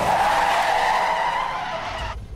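Car tyres squealing in a long skid, fading away near the end.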